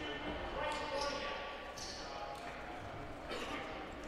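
Faint gymnasium ambience during a stoppage in play: distant voices of spectators and players, echoing in the large hall.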